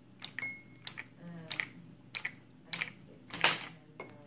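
Two red spoons clapped together by hand, a sharp click about every two-thirds of a second, about six times, the last one the loudest.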